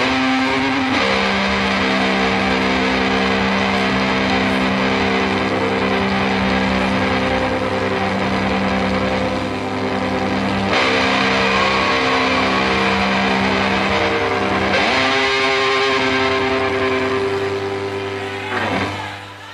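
Live rock band's distorted electric bass holding long, sustained chords as a song rings out, with no drum hits. The chord changes about a second in, again around eleven seconds and near fifteen seconds, and swooping pitch bends come in right at the end.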